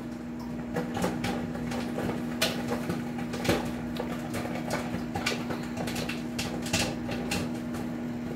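Popcorn kernels popping inside a running Panasonic microwave oven: a scattered run of sharp pops, a few a second, over the oven's steady hum.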